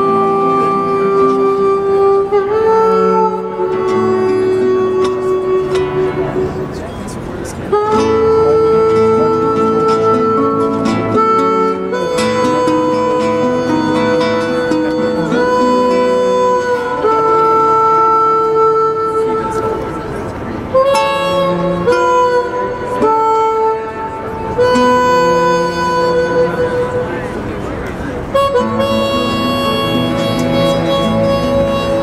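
Live acoustic trio: a harmonica plays a slow melody of long held notes over acoustic guitar and bowed cello.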